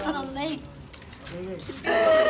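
Women wailing in grief, one crying out "nahin" ("no"). The sobbing dips quieter mid-way, then a loud wail breaks in just before the end.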